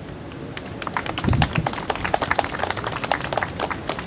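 Applause from a small crowd: many separate hand claps, starting about half a second in and going on to the end, with one low thump about a second in.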